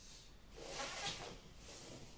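Two brief scraping strokes on paper, a longer, louder one about half a second in and a short one near the end, from a steel square and marker being worked across a large sheet of drawing paper.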